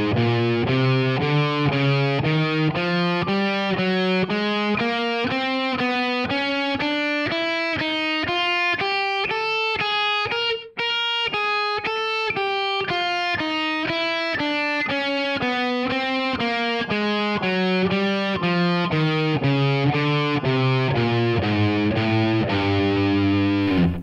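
ESP E-II electric guitar played through a Blackstar amplifier: a four-finger warm-up exercise, index, ring, middle and little finger, with alternate picking. A steady run of single notes climbs in pitch across the strings for about ten seconds, breaks off briefly, then works back down to the low strings.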